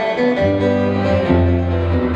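Live country band starting to play: guitars with sustained notes, and a bass line coming in about half a second in.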